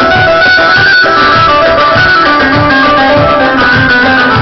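Live dance music from a wedding band, played through loudspeakers: a plucked, string-like instrumental melody over a steady, regular drum beat.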